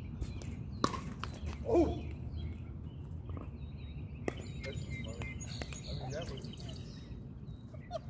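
Pickleball paddles hitting a plastic ball during a doubles rally: sharp pops at uneven intervals, the clearest about a second in and just after four seconds. A short vocal exclamation comes near two seconds.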